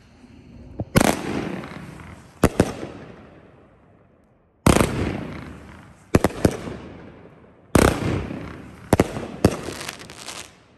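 Bright Star 'Fo' Show' 500 g, 30-shot fan-pattern firework cake firing: three volleys about three seconds apart, each opening with a sharp bang and trailing off in a fading hiss, with more sharp reports in between as shells rise on their tails and break.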